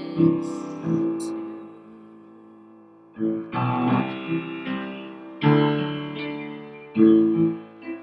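Piano chords struck and left to ring: a couple near the start, a lull while they die away, then a run of chords from about three seconds in.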